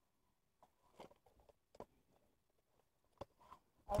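Mostly quiet, with a few faint, scattered clicks and taps.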